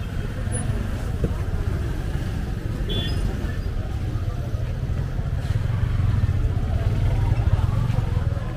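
Motorcycle engine running close by in busy street traffic, growing louder in the second half as it comes alongside, with people talking around it.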